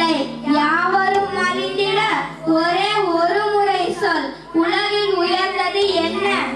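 A girl singing into a microphone, several long held phrases with slow wavering pitch and short breaths between them.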